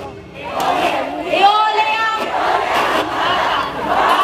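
Many voices shouting and calling out together in a loud group yell, rising out of a brief lull about half a second in after the drum music stops.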